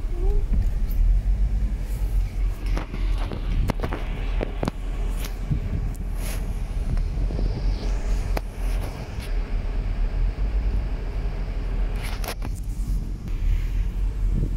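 Steady low rumble of a car heard from inside the cabin, with frequent short clicks and knocks from the phone being handled.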